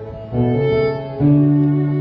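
Fiddle and acoustic guitar playing a slow folk instrumental passage together, the fiddle holding long bowed notes over the strummed guitar. New notes come in about a third of a second in and again just after a second.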